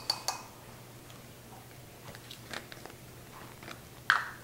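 A plastic measuring spoon tapped against the rim of a bowl to knock the salt out: the last two light, ringing clicks at the very start, then only faint scattered ticks of handling.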